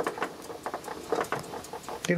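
Small irregular clicks and taps from a glass car bulb with a metal bayonet cap being turned between the fingers, over a faint steady hum.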